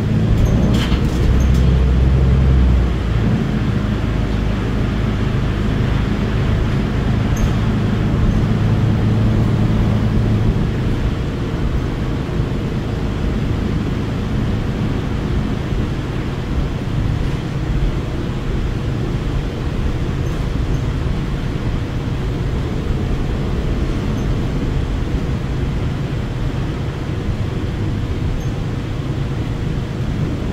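Cabin noise of a New Flyer XDE60 diesel-electric hybrid articulated bus under way: steady drivetrain drone and road rumble. A heavy low rumble in the first few seconds, then a stronger engine note that eases off about ten seconds in, with a faint steady whine throughout.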